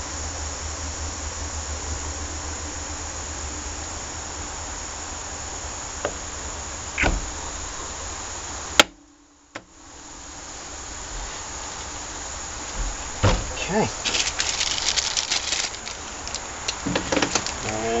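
A steady buzzing workshop hum runs under a few light knocks as the pressure washer pump is handled on the bench. The hum cuts out abruptly about halfway through and fades back up. Crinkling of plastic parts bags fills the last few seconds.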